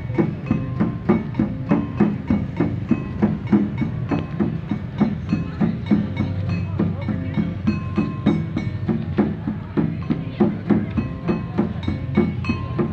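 Live percussion music in a quick, steady rhythm: repeated drum and wood-block-like strikes with short ringing pitched tones from struck bars.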